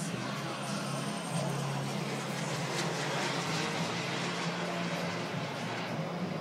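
Two turbine-powered model BAE Hawk jets flying in formation overhead: a continuous jet rush that swells slightly around the middle.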